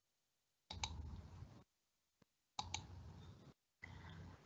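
Near silence broken by faint clicks: a double click about a second in and another past the middle, each trailed by a short, low rumble, then a last small tick near the end.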